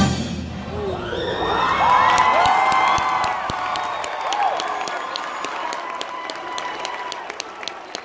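The last chord of a marching band stops right at the start and rings out briefly. Then a crowd cheers and whoops, with clapping that goes on as the cheering slowly fades.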